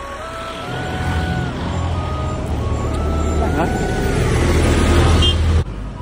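Road vehicle engine and tyres approaching and passing close, the low rumble growing steadily louder before cutting off abruptly about five and a half seconds in.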